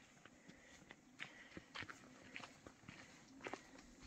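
Faint footsteps on a rocky dirt trail: a handful of short, irregular steps.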